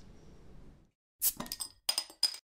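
Glass clinking: several sharp clinks in quick succession with a bright ringing tone, starting about a second in after a moment of dead silence.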